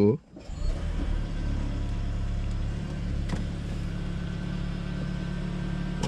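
Toyota Prius hybrid's petrol engine starting right after the car is switched on. It builds up within about a second and then idles steadily with a low hum.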